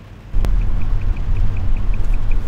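Car interior road noise on a wet road: a loud steady low rumble of tyres and engine that starts abruptly with a click about a third of a second in, with a faint rapid ticking over it.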